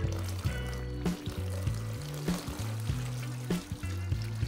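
Old electrolyte (battery acid) pouring and trickling out of a tipped lead-acid car battery onto cheesecloth over a container, under steady background music.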